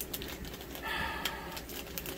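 Foil blind-bag packet crinkling with small, irregular crackles as it is squeezed and opened by hand.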